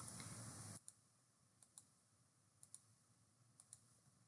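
Near silence with faint computer-mouse clicks: short clicks, mostly in close pairs, about one pair a second.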